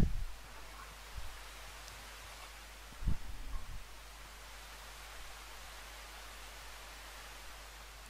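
Faint steady background hiss, broken by one short, dull low thump about three seconds in.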